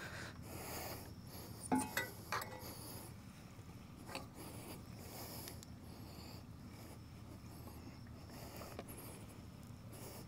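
Faint scraping and rubbing of a probe pole being pushed down through the top crust of a septic tank, with a few sharper knocks around two seconds in. The pole is testing the thickness of the crust, which proves thick.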